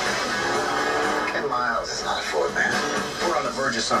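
Movie trailer soundtrack playing from a television: music, with voices coming in over it from about a second and a half in.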